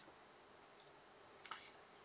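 Near silence: room tone with two faint, short clicks, one a little under a second in and one about a second and a half in.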